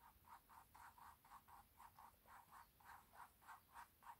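Faint, rhythmic swishing of a soft round mop brush swept lightly back and forth over wet acrylic paint on canvas, about five strokes a second, blending the colours.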